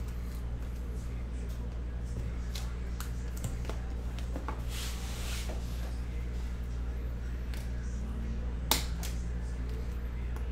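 Trading cards being handled by hand: small clicks and slides of card against card, a brief rustle of plastic about five seconds in as a card goes into a sleeve, and one sharp click near the end, all over a steady low hum.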